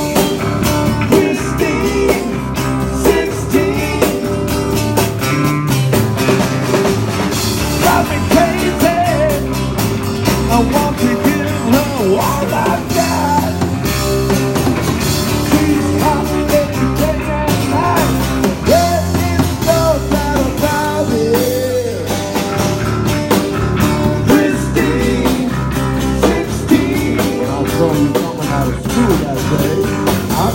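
Rock band playing live, with bass guitar, acoustic guitars and a small drum kit, and a lead voice singing over it.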